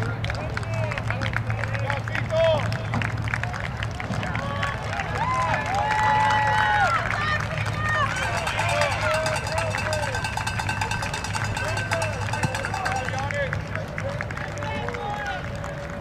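Many young men's voices calling out and chatting at once across an open field, short overlapping shouts, with scattered sharp slaps of hands meeting in high-fives.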